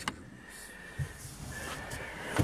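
Quiet room tone with a faint thin steady whine and one soft, low thump about a second in.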